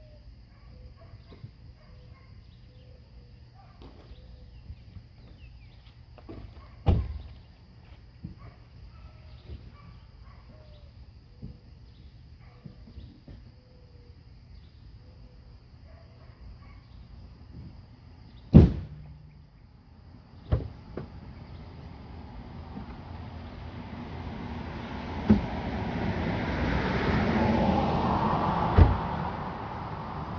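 Quiet background with faint short calls, broken by two loud thumps about 7 and 18.5 seconds in and a few smaller knocks later. Over the last eight seconds a rushing noise swells up, peaks and then drops away.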